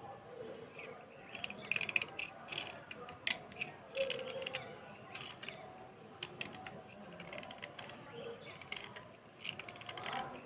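A small metal blade scraping a wet slate pencil, irregular short rasping scrapes and small clicks as the softened slate is shaved off.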